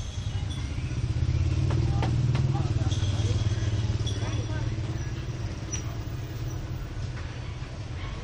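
A low engine rumble that swells about a second in and fades over the next few seconds, as of a motor vehicle passing.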